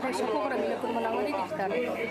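Several people's voices talking over one another, with no single voice standing out.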